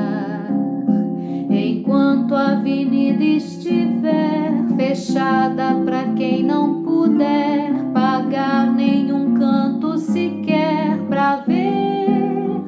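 A woman singing with vibrato, accompanied by a plucked acoustic guitar.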